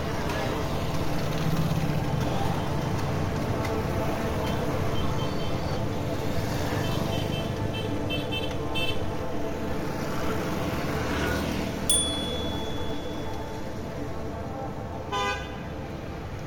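Street traffic with several short vehicle horn toots, the strongest one near the end.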